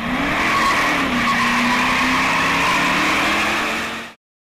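Mopar '11 Dodge Charger with its 5.7 HEMI V8 doing a burnout: loud, steady rear tyre squeal over the engine held at high revs. The revs climb in the first moment, then hold steady.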